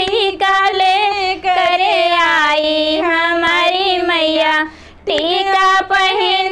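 A high woman's voice singing a Hindi devotional bhajan to Durga Mata in a sustained, ornamented melody, with a brief breath break about five seconds in.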